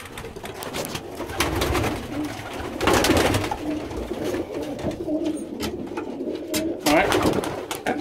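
Domestic pigeons cooing with repeated low calls, broken by a few short rushes of noise, the loudest about three seconds in.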